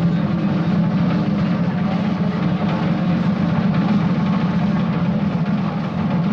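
Steady, loud background din with a low rumble and no clear voices or music.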